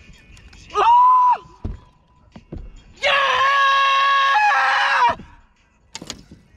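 A man yelling in excitement as he lands a big largemouth bass: a short high shout about a second in, then a long scream held for about two seconds that drops in pitch near its end.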